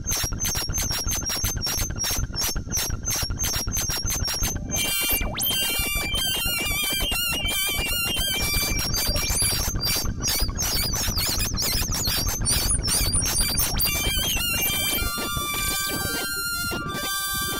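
Elektron Analog Four synthesizer played live: a fast run of repeated electronic pulses gives way, about five seconds in, to a denser texture of stepping high tones and a wavering whistle-like tone, with a steady lower tone entering near the end.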